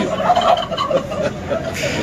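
Turkeys gobbling.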